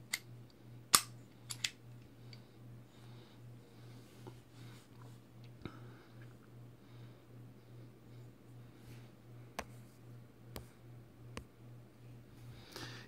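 Nickel boron 5.56 bolt carrier group handled in the hands: a few small, sharp metal clicks as its parts shift, the loudest about a second in, over a faint steady low hum.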